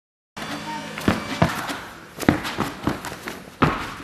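A moment of dead silence, then a run of about seven sharp, irregularly spaced thumps: bare feet landing and stepping on a gym mat during tricking, each with a short echo in the hall, over faint voices.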